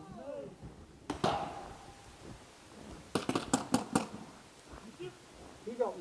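Paintball pistol firing: a single sharp pop about a second in, then a quick run of about six sharp cracks within a second, around three to four seconds in.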